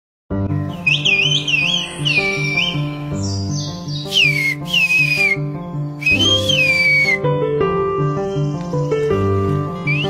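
Whistled Turkish (kuş dili, the 'bird language' of Kuşköy): a woman whistles three short phrases of rising and falling whistled glides, each carrying words, one rendered as "I'll be there!". Background music with a steady pulse of low notes plays under them.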